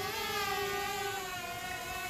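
Small camera drone's propellers whining steadily, a hum of several stacked tones that waver slightly in pitch.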